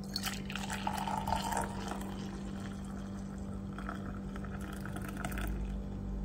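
Hot homemade cacao poured from a saucepan into a stainless-steel insulated cup, the liquid splashing and filling the cup. The pour is loudest in the first couple of seconds, then runs on more quietly until about five seconds in, over a steady low hum.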